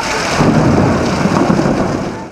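Heavy downpour hissing steadily on a flooded street, with a deep rumble joining in about half a second in.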